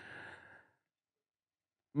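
A man's short breath, drawn in through the mouth close to a headset microphone, lasting about half a second at the start.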